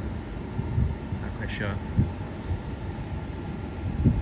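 Wind buffeting a phone microphone: an uneven low rumble that swells and thumps in gusts.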